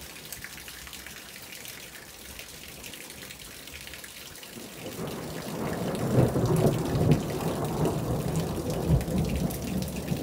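Steady light rain, then from about five seconds in a long roll of thunder builds and rumbles on, much louder than the rain.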